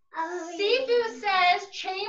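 A child's high voice in a sing-song, melodic run, starting just after the start and going on with only brief breaks, its pitch gliding up and down.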